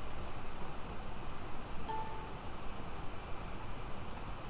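Steady background hiss with a few faint computer mouse clicks as items are selected in the CAD software. A short electronic beep sounds once about two seconds in.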